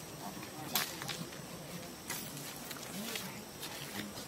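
Faint distant voices over outdoor ambience, with a few sharp clicks or snaps, the loudest a little under a second in.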